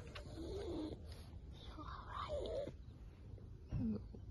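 A sleeping pug making a few short grunts and snuffles, the loudest near the end.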